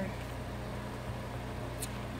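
Steady low machine hum from an appliance running in the room, with a short paper rustle near the end as a stiff journal page is turned.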